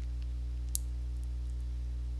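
A steady low hum in the recording, with one short faint click a little under a second in.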